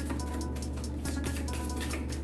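Background music: a held low note under short, soft higher notes.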